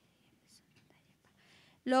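A pause of low room sound with faint, brief whispered sounds. Near the end a woman's speaking voice starts up again.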